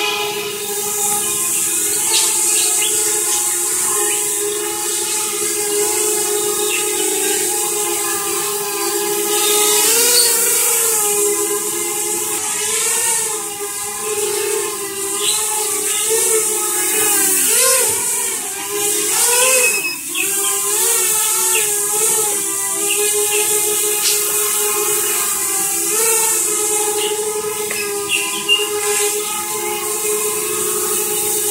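Mini quadcopter's four brushless motors and propellers whining in a hover, a steady buzz of several tones over a rushing hiss. The pitch wavers up and down as the throttle corrects, most through the middle of the stretch.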